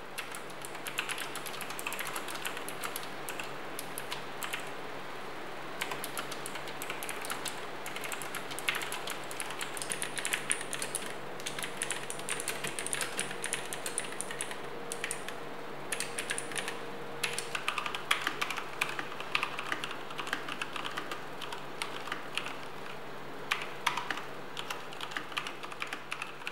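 Fast typing on mechanical gaming keyboards, a dense run of key clicks: first an E-DRA EK307 Plus Optical with clicky blue optical-mechanical switches, then a Fuhlen M87S with blue switches, then a DareU EK169 with brown switches.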